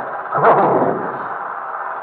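A brief laugh about half a second in, with a falling pitch, followed by a steady low background hum.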